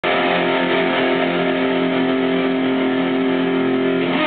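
Electric guitar chord struck at the very start and left ringing, held steady without a change of notes.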